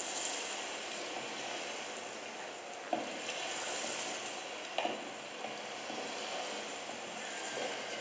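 Steady hiss of background noise, with two brief knocks about three and five seconds in.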